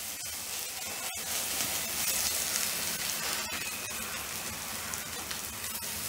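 Chopped onions and ginger-garlic paste sizzling in hot oil in a non-stick kadai as they are stirred with a spatula: a steady hiss. They are being sautéed to cook off the paste's rawness.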